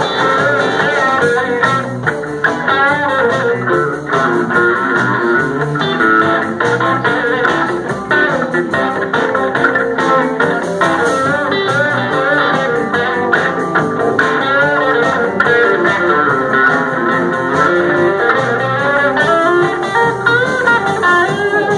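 Live blues band playing an instrumental break of a rock-and-roll number: electric guitars, bass guitar and drums, with a blues harmonica played into a microphone. The wavering lead lines run throughout, with no singing.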